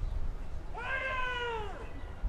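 One long, high-pitched call from a person's voice, rising slightly and falling away at the end, over steady stadium crowd noise.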